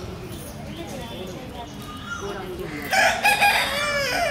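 A rooster crowing once, loud, starting about three seconds in, over faint distant voices.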